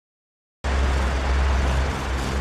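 Silence, then about half a second in a loud, steady rotor whir with a heavy low rumble cuts in abruptly: a large multirotor drone carrying a hammock, flying overhead.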